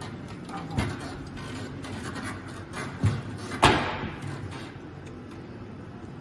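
Hands handling a mobility scooter's seat and armrest: a light knock near the start, another about three seconds in, then a sharp clack just after it that is the loudest sound, with a brief ring, over a low steady hum.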